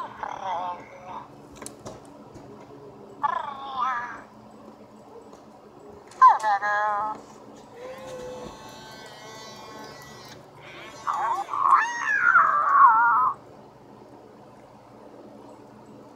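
Interactive electronic plush toy making a string of short creature calls through its small speaker, each with a wavering pitch, separated by pauses; the longest and loudest comes about eleven seconds in.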